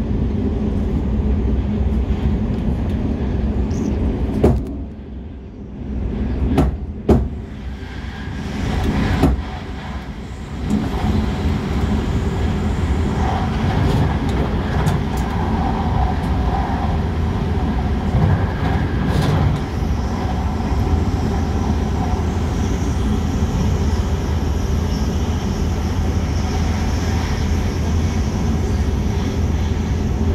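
Passenger train running, heard from inside the carriage: a steady low rumble. It drops quieter for several seconds from about four seconds in, with a few sharp knocks, then returns to steady running noise.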